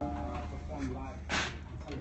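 Faint, indistinct voices over a low steady hum, with one short sharp burst of noise a little past the middle.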